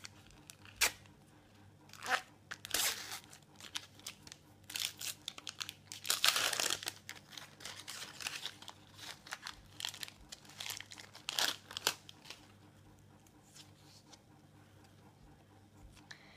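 A Panini sticker packet's wrapper torn open and crinkled by hand, in a run of short rustles with the longest, loudest tear about six seconds in, then the paper stickers shuffled through with soft rustles and clicks.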